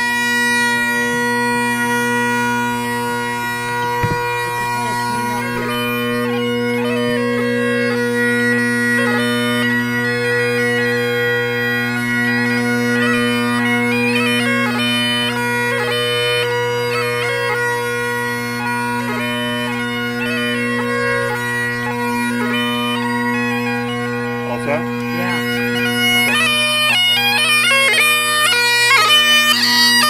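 Great Highland bagpipe playing: the bass and tenor drones hold one steady chord under the chanter's melody. The chanter's notes grow quicker and more ornamented over the last few seconds.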